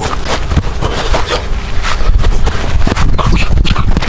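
Sparring in the middle of a boxing round: many short hits and scuffs from gloves and feet, with hard breathing from the fighters, over a steady low rumble on the microphone.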